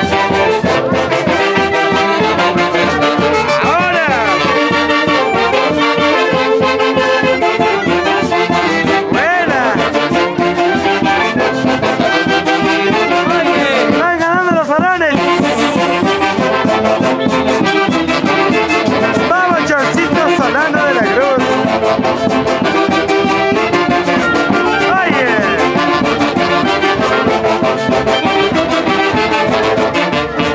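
A live saxophone-and-brass festival orchestra playing a continuous dance tune. A swooping high note rises and falls about every five seconds.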